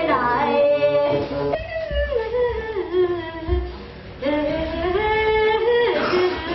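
A woman singing unaccompanied, a slow melody of long held notes that slide between pitches, with a short pause for breath about four seconds in.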